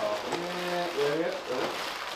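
A man's voice making drawn-out hesitation sounds, with light rustling of plastic air-pillow packing being lifted out of a cardboard box.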